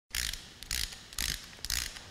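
Ratchet-like mechanical clicking sound effect in four short bursts, about half a second apart, under an animated logo.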